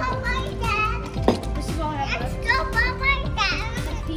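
Indistinct chatter and children's voices over background music, with one sharp knock about a second in.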